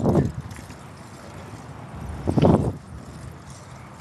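Wind and road noise rushing on a handheld camera microphone while riding a bicycle, with two short louder bursts, one at the start and one about two and a half seconds in.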